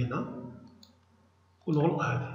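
A computer mouse click, with a man's voice briefly at the start and again near the end, over a steady low hum.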